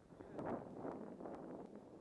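Snowboard sliding over packed snow: a scraping hiss that swells about half a second in and then holds steady.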